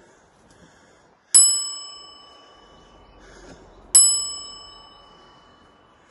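Two bright bell dings about two and a half seconds apart, each ringing out and fading over a second or more: the bell sound effect of a subscribe-button animation.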